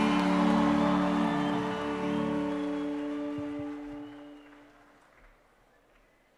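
A worship band's final chord is held and then fades out. It dies away to near silence about four to five seconds in.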